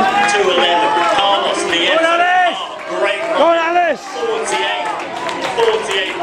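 Raised voices shouting and calling, with two loud drawn-out shouts about two and three and a half seconds in.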